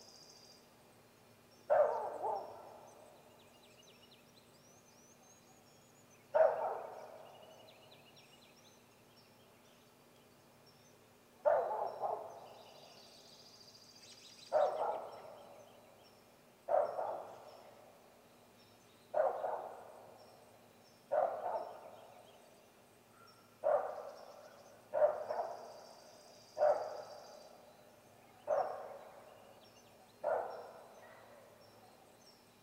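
Great gray owl giving a string of loud, harsh calls, about eleven in all. Each cuts in suddenly and trails off, and they come faster from about halfway on. Small birds chirp faintly in the background.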